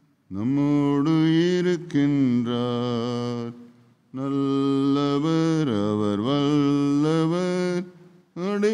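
A man's unaccompanied voice chanting a Tamil hymn in two long phrases of held, gliding notes, with a breath pause about four seconds in.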